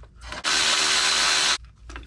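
Cordless ratchet running for about a second with a steady motor whine, spinning out a 13 mm bolt on the engine's oil filter housing.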